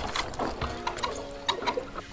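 A series of sharp, irregular clicks and knocks, about eight in two seconds.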